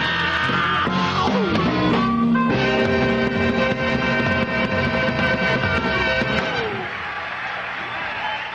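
Live blues band with electric guitar, drums and bass closing out a song. Guitar runs lead into a long held final chord about two and a half seconds in, which dies away near the end.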